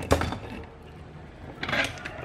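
Handling noise from a salvaged power-adapter circuit board being picked up and turned over on a workbench: a brief knock at the start, then quieter rubbing and shuffling.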